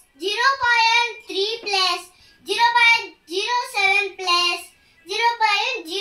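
A young boy's voice talking in short phrases with brief pauses between them, his pitch rising and falling widely.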